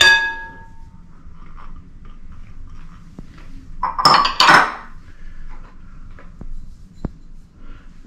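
Glass dishes clinking. A small glass dish knocks the rim of a large glass mixing bowl with a short ringing clink, then a louder clatter and scrape against the bowl about four seconds in, and a light tap near the end.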